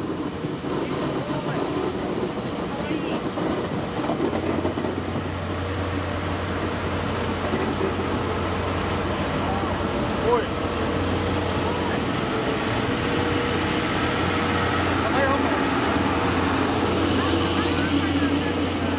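JNR Class DE10 diesel-hydraulic locomotive hauling a train of passenger coaches slowly past at close range: a steady low engine drone over the rumble of the wheels on the rails, with a single knock about ten seconds in.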